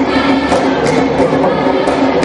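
Music: a choir singing held notes, with percussive hits every so often.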